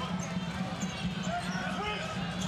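A basketball being dribbled on a hardwood court in repeated bounces, with steady arena crowd noise behind.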